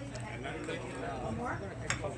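Murmur of voices with clinking dishes and cutlery, and one sharp clink near the end.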